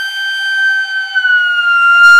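Bamboo bansuri flute holding one long note that sinks slightly in pitch about a second in.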